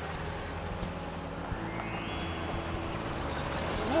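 Sound effect of cartoon vehicles driving: a steady engine-and-road rumble, with a faint rising sweep in the middle.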